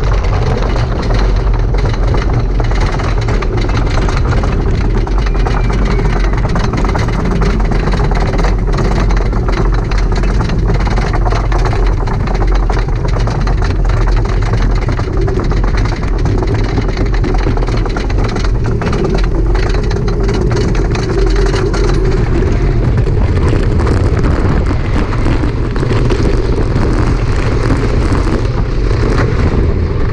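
Wooden roller coaster train climbing its chain lift hill: the lift chain runs with a steady clanking rattle, with a constant stream of clicks over a heavy low rumble.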